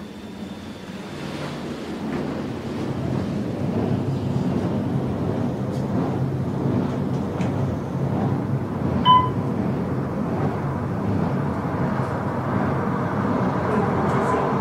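Passenger elevator car travelling down the hoistway: a steady rushing hum of the moving cab that builds over the first few seconds, then holds. A short high beep sounds about nine seconds in.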